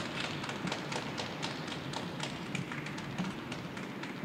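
Scattered applause from a small audience: irregular, separate hand claps.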